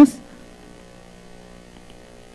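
A woman's amplified voice breaks off at the very start. It leaves a faint, steady electrical hum made of several even tones in the microphone and sound-system feed.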